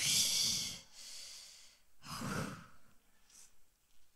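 A woman breathing heavily into a close handheld microphone while weeping. There is a long exhale at the start, then a second, shorter breath about two seconds in.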